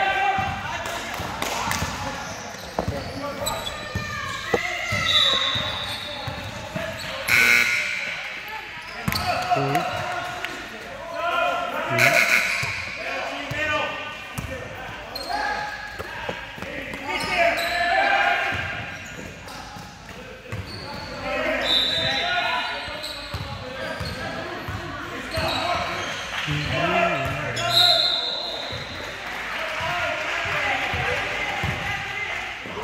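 Basketball game in a large gym: a ball bouncing on the hardwood floor amid players' and onlookers' voices, echoing in the hall.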